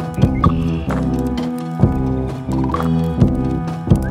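Instrumental background music with sustained pitched notes and a recurring percussive beat.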